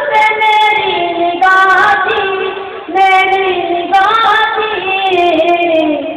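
A young student singing lines of an Urdu ghazal in a melodic recitation: four held phrases, each drifting down in pitch at its end.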